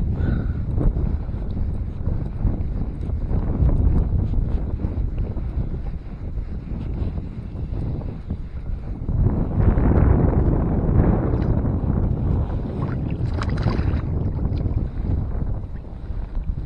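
Wind buffeting the microphone in a steady low rumble, swelling about nine seconds in. Under it are faint ticks from a multiplier reel being wound in with a fish on the line.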